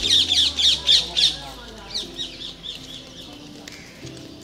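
A bird calling: a rapid series of sharp, high, downward-sweeping squawks, about four or five a second, loudest at first and fading away by about three seconds in.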